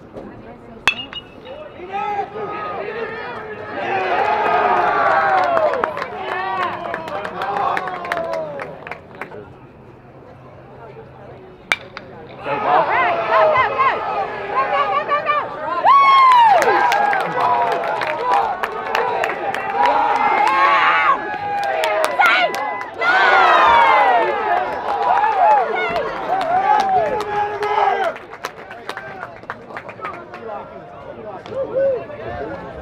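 Baseball crowd and players yelling and cheering, many voices at once, in two loud stretches. A sharp crack comes about a second in, and another just before the second, louder round of cheering.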